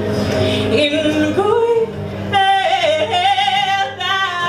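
A woman singing with acoustic guitar accompaniment, holding a long wavering note through the second half.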